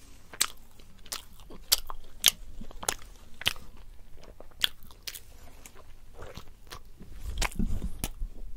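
Close-miked chewing and biting of a curry-dipped flatbread, with irregular sharp crunchy clicks and wet mouth sounds. A low thud comes near the end.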